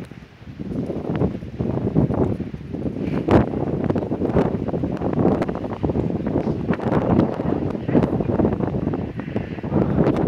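Wind blowing across the microphone: a loud, gusting low rumble that dips briefly near the start, with scattered faint clicks.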